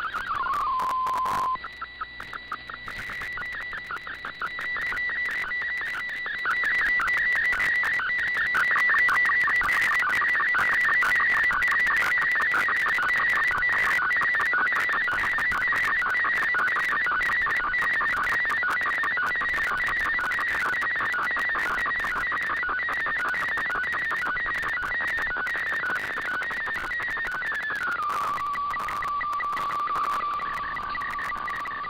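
Shortwave digital-mode signal heard through an AM receiver: an MFSK64 colour picture being transmitted, a high whistling tone near 2 kHz that flutters rapidly and evenly as the image data is sent, over light static. At the start a tone slides down and breaks off. Near the end the signal drops to a lower steady tone.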